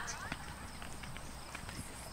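Horses trotting on a sand arena, a scatter of soft hoofbeats.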